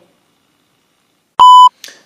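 Dead silence for over a second, then one short, loud, steady 1 kHz beep tone of the kind edited in as a censor bleep.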